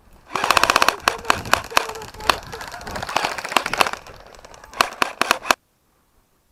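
Airsoft guns firing: a rapid full-auto burst about half a second in, then scattered shots and short bursts. It cuts off suddenly near the end.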